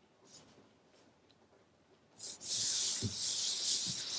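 Hands rubbing over a sheet of patterned paper to smooth it down: a couple of faint taps, then about halfway in a steady papery hiss with a few soft thumps as the palms press.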